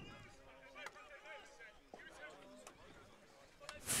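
Faint, distant shouts of field hockey players calling on the pitch, with a few sharp taps of sticks striking the ball.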